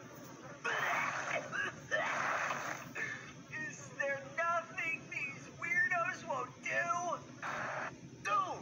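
Cartoon character's retching and gagging sound effects playing from a TV: three harsh, rasping heaves, with warbling gagging groans between them.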